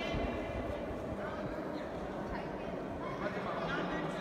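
Indistinct chatter of many visitors talking at once in a large hall, a steady murmur of voices with no single clear speaker.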